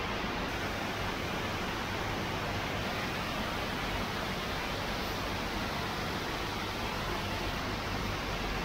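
Steady, even background hiss with no distinct knocks or clinks.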